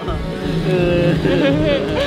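Background music with a man's voice laughing over it, with no spoken words.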